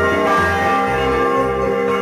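Church bells pealing, many overlapping ringing tones sounding together with repeated deep strokes beneath them.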